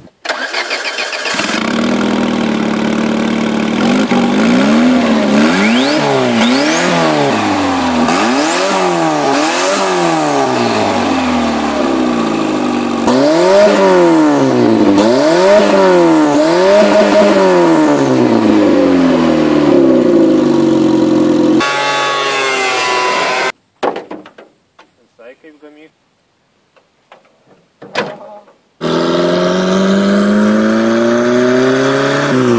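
Small car's petrol engine, fitted with a makeshift turbocharger and an open pipe exhaust, starts up and is then revved over and over, its loud note rising and falling about once a second. After a break near the end, an engine is heard accelerating from inside the car.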